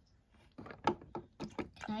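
A string of light clicks and taps from small plastic dolls and toy pieces being handled and set against a plastic toy table, starting about half a second in.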